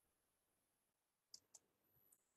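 Faint computer mouse double-click: two quick clicks about a fifth of a second apart, a little past halfway through, against near silence.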